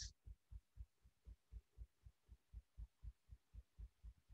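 Near silence: faint room tone with a soft low pulsing, about four beats a second.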